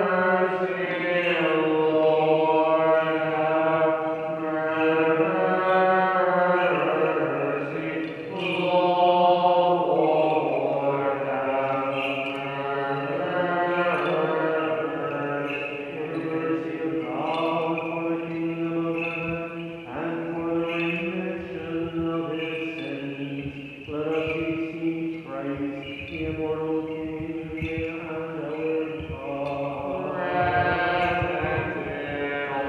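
Unaccompanied Ukrainian Catholic (Byzantine-rite) funeral chant sung by a man's voice, in phrases of long held notes with short breaks between them.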